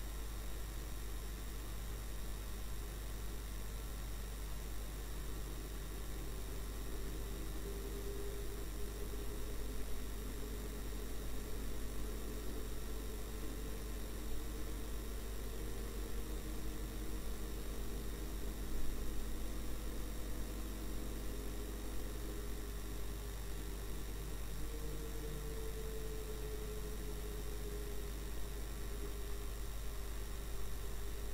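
Steady electrical hum and hiss in a dashcam recording, with a faint vehicle engine drone underneath that slowly rises and falls in pitch.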